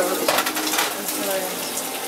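Food sizzling in a frying pan, with small metallic clinks of a utensil against the pan.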